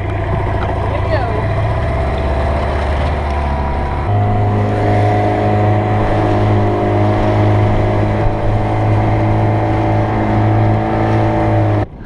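Two-stroke outboard motor on an inflatable dinghy running under way. About four seconds in it steps up to a higher, steady speed. The sound drops sharply just before the end.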